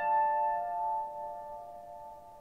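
Slow piano music: a single struck note rings on and slowly fades away.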